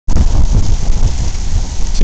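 Loud, steady low rumble with hiss and no clear tone, typical of wind buffeting the microphone.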